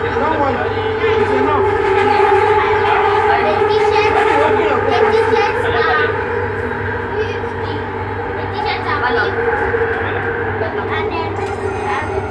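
Bombardier Innovia ART 200 metro train running at steady speed, heard from inside the car: a steady motor whine over a low rumble, with passengers' voices over it.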